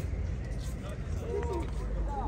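Faint voices of people talking at a distance over a steady low background rumble.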